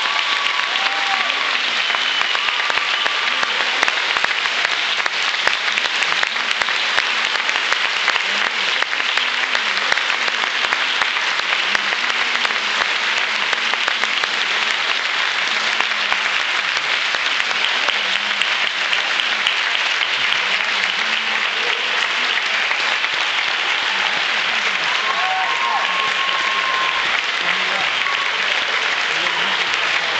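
Audience applauding steadily after a concert band finishes, with a few cheers and whistles.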